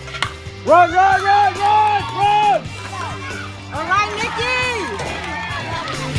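Young voices chanting a cheer at a youth baseball game: a run of about four drawn-out shouted calls, then a second run near the end, over background rock music.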